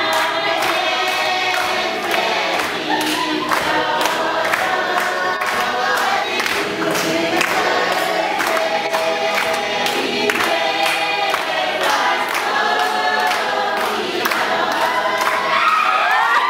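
A group of voices singing together, with steady hand clapping on the beat.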